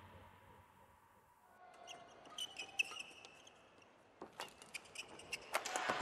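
Music fading out, then faint badminton court sounds: shoes squeaking on the court and sharp clicks of rackets hitting the shuttlecock, growing louder near the end.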